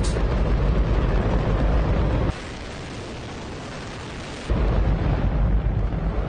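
Hydrogen-oxygen rocket engine firing on a test stand: a loud, deep, continuous roar. About two seconds in it drops abruptly to a thinner hiss with the low end gone, and returns in full about two seconds later.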